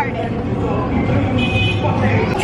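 Busy theme-park ride noise: people's voices over a steady low rumble from the moving ride cars. About a second and a half in comes a short, high, horn-like toot.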